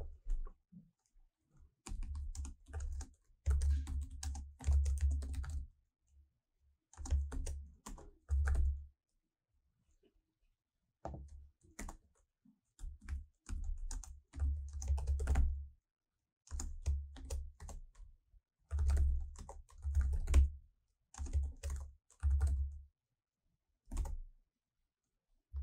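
Typing on a computer keyboard: bursts of quick keystrokes separated by short pauses.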